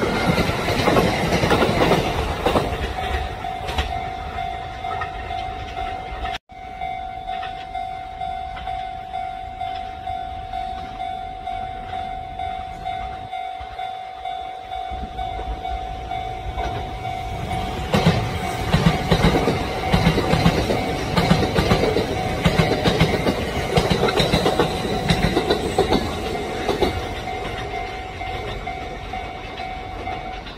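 Kintetsu electric train passing, its wheels clacking rhythmically over the rail joints, loudest from about 18 to 27 seconds in. A steady high-pitched tone runs under it and stops near the end.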